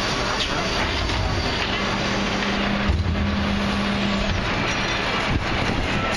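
Mercedes Econic refuse truck with a Dennis Eagle rear-loader body running its packing hydraulics over the engine: a steady machine hum that drops away about four seconds in, with a heavier low rumble shortly before.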